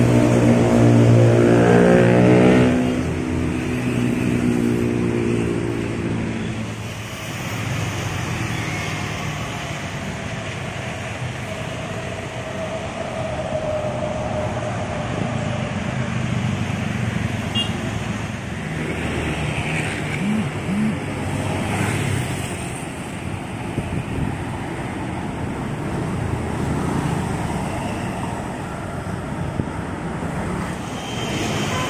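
Mercedes-Benz OH 1626 bus's diesel engine running loud and close as the bus pulls past, fading away about three seconds in. After that, steady street traffic of cars and motorbikes going by.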